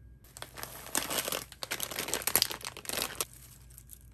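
Packaging crinkling and rustling for about three seconds as snack packets are lifted out of a box packed with shredded paper filler, then fading to a few lighter rustles.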